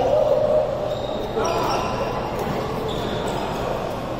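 Sounds of badminton play in a large indoor hall: shoes squeaking on the court and rackets striking a shuttlecock, with players' voices.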